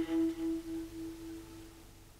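The final held note of a Persian classical violin piece, wavering about four times a second as it dies away and fading out shortly before the end.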